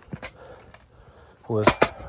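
A few faint short clicks over low background, then a man says a word near the end, with two sharp clicks inside it.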